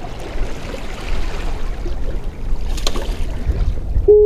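Seawater washing against jetty rocks, with wind buffeting the microphone in a heavy low rumble. A single sharp click sounds near the end.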